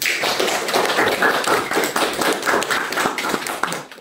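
Audience applauding: many hands clapping at once in a dense patter that starts suddenly and dies down near the end.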